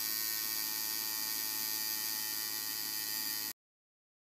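Coil tattoo machine buzzing steadily, then cutting off suddenly near the end.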